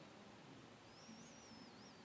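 Near silence: room tone, with a faint high warbling whistle in the second half.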